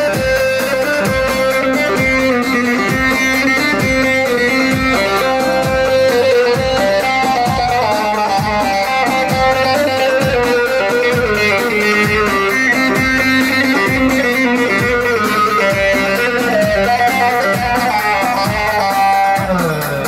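Amplified live dance music for a halay: a plucked-string lead plays a winding melody over a steady drum beat, the melody sliding down near the end.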